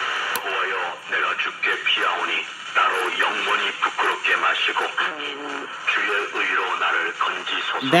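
Korean-language talk played through the small speaker of an AVI Radio FM/SCA receiver tuned to an SCA subcarrier station on 104.3 FM, with steady hiss under the voice.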